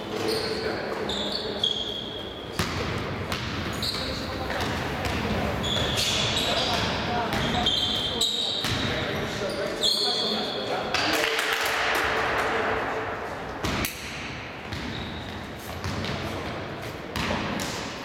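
Basketball game sounds in an echoing sports hall: many short, high squeaks of sneakers on the court floor, a ball bouncing, and players' voices.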